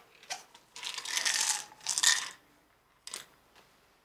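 A small medicine package being opened and handled by hand: a few short bursts of crinkling and clicking, the longest lasting about a second, starting just under a second in.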